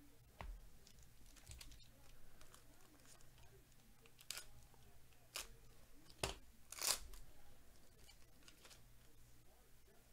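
Foil wrapper of a Bowman Chrome trading-card pack being torn open and crinkled by hand: a few quiet, short crackles, the loudest about two-thirds of the way through, with faint rustling between them.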